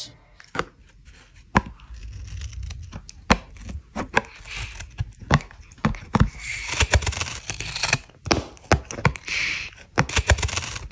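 A cat biting and chewing the edge of a thick cardboard cat toy. There are irregular sharp crunches a few times a second, and in the second half longer, rougher scraping and tearing sounds.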